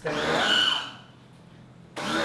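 Electric pressure washer's motor and pump starting with a steady high whine, running for about a second and then stopping. It starts again right at the end.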